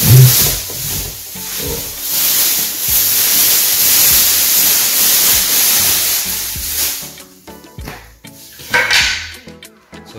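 A thin plastic bag rustling and crinkling as it is pulled off a new lawn mower. The crinkling stops about seven seconds in.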